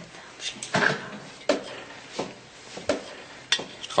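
Light handling sounds: a run of about five short knocks and clatters, spaced irregularly, as objects are set down and moved on a table.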